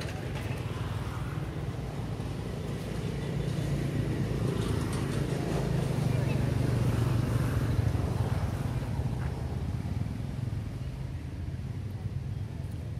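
A motor vehicle's engine running, a low steady hum that grows louder toward the middle and then fades.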